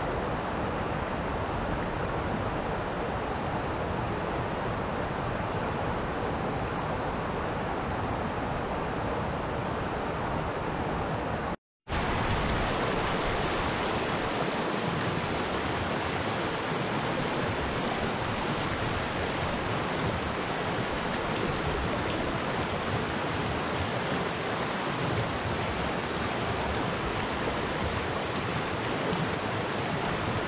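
Rushing river water: a steady, even roar of water over stones. About 12 seconds in it cuts out completely for a moment, then resumes with a little more hiss.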